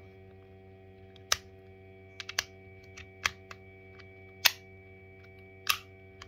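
Pieces of a physical 2^4 hypercube puzzle clicking and clacking as they are separated and snapped back together during a gyro move. There are about nine sharp clicks at irregular intervals, the loudest about halfway through, over a steady electrical hum.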